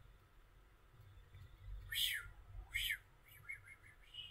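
A bird chirping faintly: two short chirps rising and falling in pitch, about a second apart, then a few shorter, softer notes near the end.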